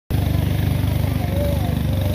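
A small boat's engine running steadily under way, a low, even drone.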